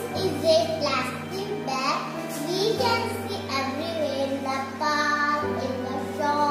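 A child singing over backing music with sustained bass notes that change pitch twice.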